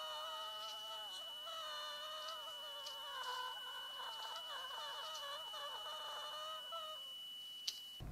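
A woman singing an unconventional vocal piece, her voice wavering and warbling in pitch, with no accompaniment showing. It stops about a second before the end, followed by a single click. A faint steady high tone runs underneath.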